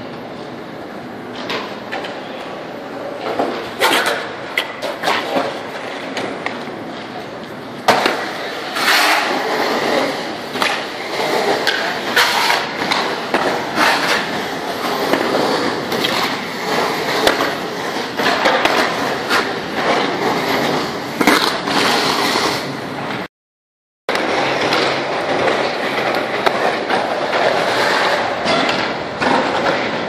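Skateboard wheels rolling over concrete bowls and transitions, a continuous rolling noise broken by frequent sharp clacks and knocks of boards and trucks striking the concrete. It cuts out abruptly for under a second about 23 s in, then resumes.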